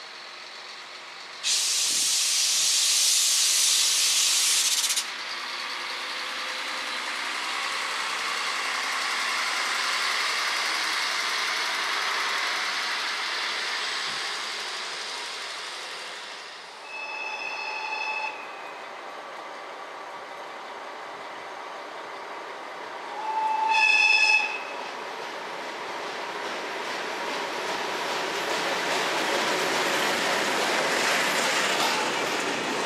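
A loud burst of compressed-air hiss from railway brakes lasts about three seconds near the start. A train's rumble then swells and fades. A short train horn blast sounds past the middle and a louder one later on, and the rumble of an approaching freight train hauled by a ČD Cargo class 750 diesel-electric locomotive grows toward the end.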